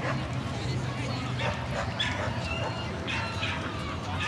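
A dog giving several short, high-pitched yips and barks over background chatter.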